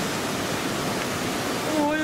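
Steady rush of a mountain stream pouring into a clear rock pool. A man's voice begins near the end.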